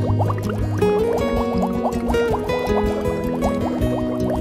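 Background music: sustained low notes under many quick, repeating rising bloops, several a second.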